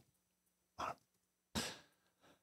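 Two brief, faint sounds from a person at a microphone, one about a second in and a short fading puff of breath-like noise shortly after, in otherwise near-silence.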